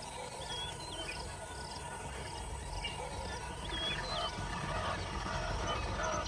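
Outdoor wildlife ambience. A small high chirp repeats evenly about twice a second, while short whistled bird calls that bend in pitch come every second or so over a low rumble, and lower short calls join in from about four seconds in.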